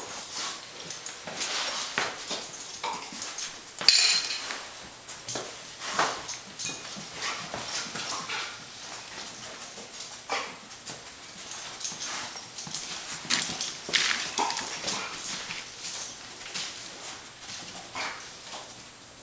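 Bed bug detection dog sniffing along exercise equipment: a run of short, irregular sniffs. A sharp knock about four seconds in.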